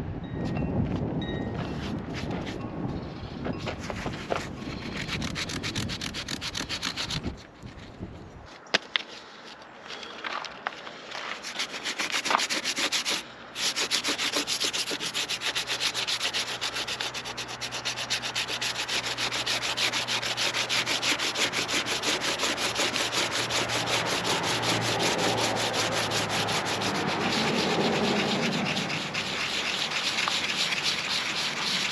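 Sandpaper rubbing over a gel coat patch on a fibreglass boat deck, sanding the repair back down so it can be redone. The steady rasp starts and stops in the first several seconds, then settles into continuous sanding from about a third of the way in.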